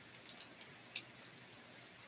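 A few faint, sharp clicks over quiet room tone, bunched in the first second: small tools or parts being handled at a workbench.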